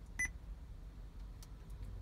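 Joying Android car stereo head unit giving one short, high touch-confirmation beep as its touchscreen is tapped, about a fifth of a second in.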